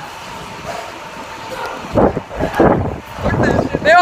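Handling and rubbing noise on a phone microphone as its holder runs with it. Uneven thumps and scuffs start about two seconds in, with a voice near the end.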